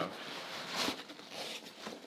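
Hands rummaging in a cardboard shipping box, rustling paper and packing material, with a louder rustle about a second in.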